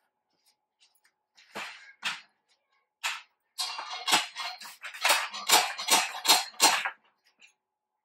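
Steel shelving parts knocking and clattering: a few separate knocks, then a run of about five sharp metallic taps near the end, two or three a second. These are a shelf pin being knocked into a slotted steel upright with a flathead screwdriver.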